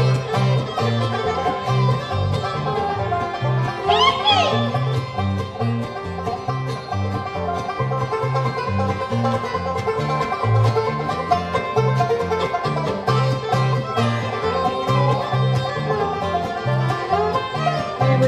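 Bluegrass band playing an instrumental break on banjo, mandolin, acoustic guitar, fiddle, dobro and upright bass, the bass keeping a steady beat. A sliding, rising-and-falling note comes about four seconds in.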